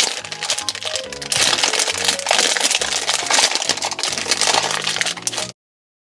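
Background music from a toy-opening video playing on a tablet, with crackling of plastic toy packaging being handled over it. The sound cuts off suddenly about five and a half seconds in as playback is paused.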